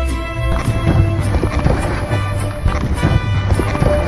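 Latin-style band music with brass and a repeating bass line. A held brass note stops about half a second in, and many short, sharp taps run through the rest.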